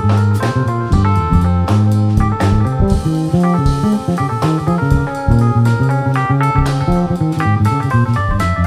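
Live instrumental trio of electric bass guitar, drum kit and keyboard playing together. Low bass notes change every fraction of a second under frequent drum and cymbal hits, with keyboard chords on top.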